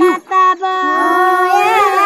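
Unaccompanied singing of a Bagheli sohar folk song: high voices drawing out long held notes that waver in pitch, with a brief break about a quarter second in.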